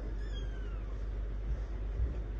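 A single short, high meow that falls in pitch, over a steady low hum.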